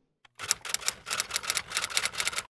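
Typewriter sound effect: a quick run of sharp key clicks, starting about half a second in, laid over title text being typed onto the screen.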